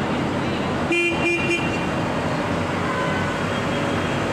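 A vehicle horn gives three short toots in quick succession about a second in, over the steady running of passing diesel wheel loaders.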